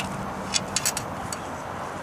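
A small sterling silver pendant being turned over by fingers on a hard surface: a few light clicks about half a second to a second in, over a steady background hiss.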